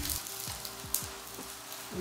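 Water spinach sizzling in hot oil in a frying pan as it is stirred with chopsticks, a steady hiss with a few sharp pops, the loudest about a second in.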